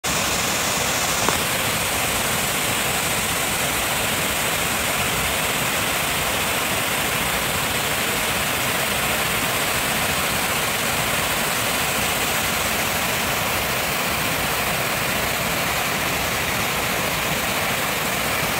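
Waterfall cascading over rock ledges: a steady, even rush of falling water.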